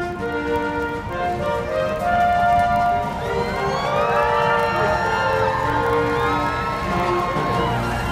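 Instrumental background music with steady held notes. About three seconds in, police sirens begin wailing, rising and falling over the music: the motorcade's police escort passing.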